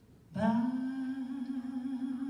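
A woman's voice holding one long, steady low note without accompaniment, coming in about a third of a second in with a slight scoop up to pitch.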